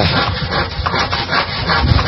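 A hand tool worked in quick, repeated back-and-forth strokes against a bamboo pole, making a rasping, rubbing sound.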